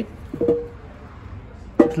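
A metal test weight being picked up off the steel diamond-plate deck of a floor scale: one short metallic clank with a brief ring about half a second in.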